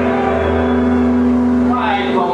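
Live rock band holding a loud, sustained distorted chord on electric guitars over a low, steady bass drone.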